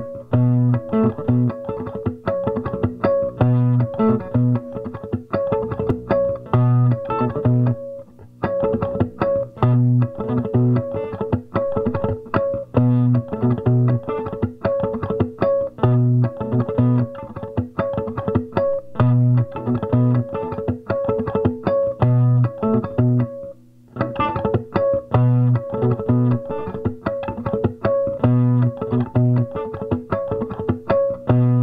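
Nine-string Esquire electric guitar played through an amp into an Ampeg 8x10 cabinet, repeating a picked riff with deep low notes and higher picked notes over them. The riff breaks off briefly twice, about eight seconds in and again near twenty-three seconds.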